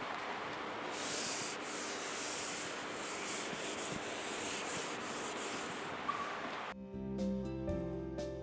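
A whiteboard being wiped clean: a steady rubbing and scrubbing against the board that lasts several seconds, strongest in the middle. Soft music comes in near the end.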